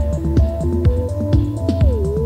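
Electronic music: a synthesizer sequence of short stepped notes over a bass line and a steady drum beat of about two strokes a second, with one note gliding down in pitch near the end.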